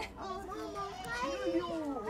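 Overlapping chatter of several people, children's voices among them, with no clear single speaker.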